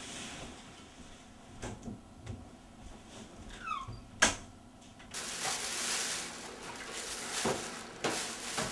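A man getting off a bed in a small room: faint rustling, a short squeak, then one sharp click about four seconds in, the loudest sound. From about five seconds on, a steady hiss with a few light knocks.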